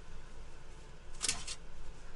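Two short scrapes of rigid plastic, a quarter-second apart, as a freshly 3D-printed PLA hydrofoil wing section is taken off the printer's textured print plate, over a faint low hum.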